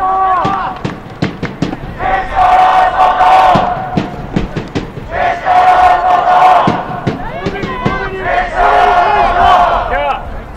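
A group of young male voices chanting in unison, celebrating a goal for the green team: three long, held shouts about three seconds apart, with sharp claps in between.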